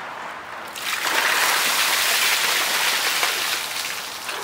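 Ice water poured from a container over a seated person, splashing onto his head and shirt: a steady rush of pouring water that starts about a second in and tails off near the end.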